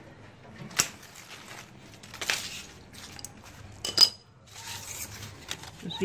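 Hand pruning shears cutting a mango branch: a few sharp metallic clicks of the blades, the loudest about four seconds in, then a soft rustle near the end.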